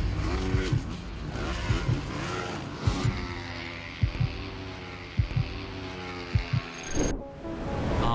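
Supermoto racing motorcycle engines revving and passing, with the pitch wavering and falling, over music punctuated by heavy bass hits. The sound cuts out briefly near the end.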